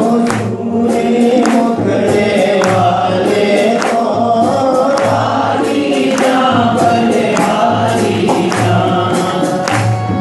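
Devotional Hindi bhajan: voices singing together over a steady low drum beat, about one beat every 0.8 seconds, with short percussion strikes.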